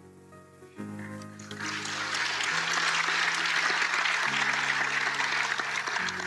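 Audience applause, rising about a second and a half in and going on steadily, over soft background music of held chords.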